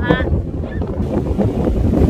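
Strong wind buffeting the microphone in a steady low rumble.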